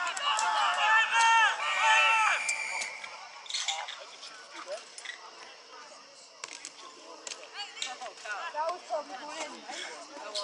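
Several voices shouting loudly and drawn-out as a rugby tackle goes in, for about the first two and a half seconds. Then quieter scattered calls and chatter around the pitch, with a few sharp clicks.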